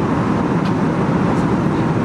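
Steady low rumble of airliner cabin noise from the engines, even and unbroken.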